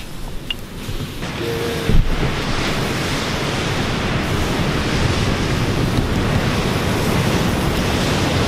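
Steady rushing noise that rises about a second in and holds, with a single thump about two seconds in.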